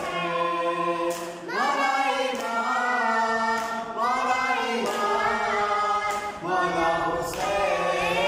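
A boy singing a noha, a Shia lament, in long held phrases with short breaks every two to three seconds.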